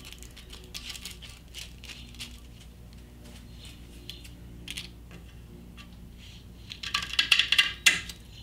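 Non-slip grip tape being handled on a metal trailer tongue: small taps and crinkles as the tape is unrolled and pressed down, then a louder burst of scratchy noise about seven seconds in as the tape is worked at the roll with scissors.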